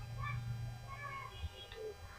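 Faint, short animal calls, a few scattered through the pause, over a low steady hum.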